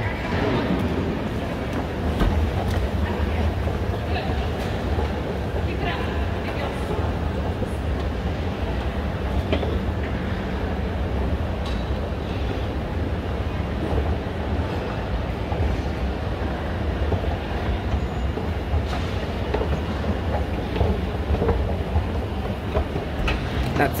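Kone TravelMaster 110 escalator running under load, a steady low rumble and hum of the moving steps and drive, with a few light clicks.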